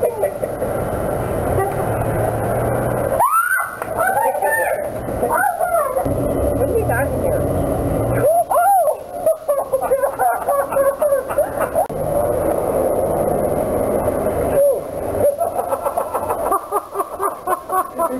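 People's voices reacting to a living-statue prank: startled exclamations and laughter in bursts, over a steady low background rumble.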